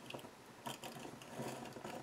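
Crate Paper rub-on pen rolled along paper as it lays down a line of heart decals, its small roller mechanism making faint, uneven clicks.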